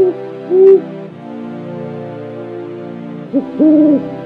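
Background film score: sustained synthesizer chords under a lead melody of short held notes, the loudest about half a second in and a longer one near the end.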